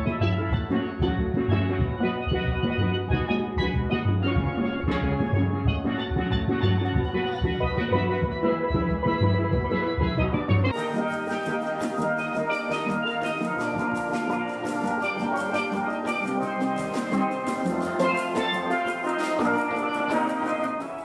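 Steel band music: many steelpans playing together, with deep bass pans beating a steady pulse. About halfway through it switches to a different steel orchestra piece, brighter and without the deep bass.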